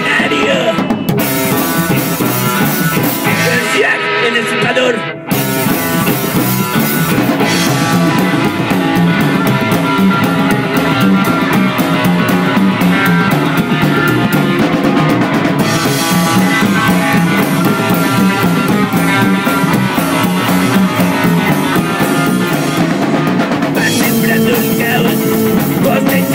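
Psychobilly band playing loud: hollow-body electric guitar, upright double bass and drum kit. About five seconds in the band stops for a brief break, then comes back in with busy, fast drumming.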